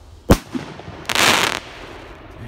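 A Radioactive firework rocket bursts with one sharp bang about a third of a second in. About a second in, the breaking stars give a loud rush of dense, hissing noise lasting about half a second.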